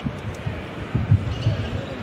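Basketball being dribbled on a hardwood court: a string of short, low bounces at an uneven pace, heard over the open hall.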